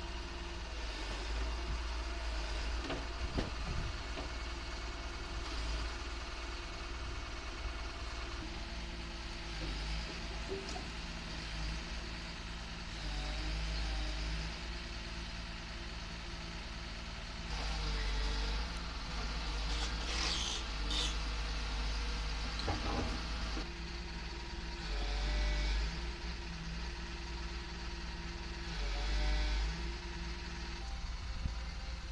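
Caterpillar tracked excavator's diesel engine running steadily and revving up and down as the arm works under load. A few sharp clatters of falling brick rubble come about two-thirds of the way through.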